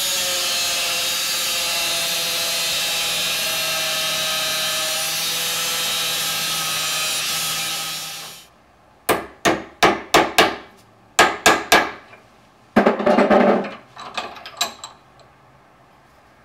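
Angle grinder cutting eighth-inch steel plate, running steadily with a whine and then stopping about eight seconds in. Then a ball-peen hammer strikes metal held in a bench vise, about nine sharp blows over three seconds, bending the cut tabs over. A brief quick clatter and a few lighter taps follow.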